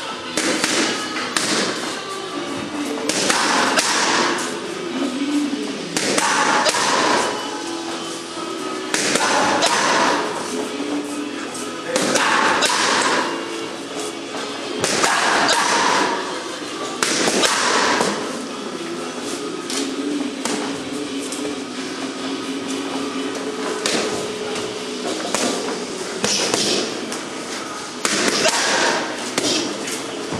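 Boxing gloves striking focus mitts in short combinations of several quick punches, a burst every few seconds, over music.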